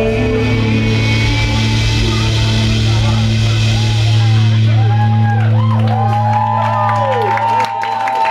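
A live rock band lets its final chord ring out on electric guitars and bass, held as one long sustained note. Voices whoop and shout over it from about halfway through. The chord is cut off shortly before the end.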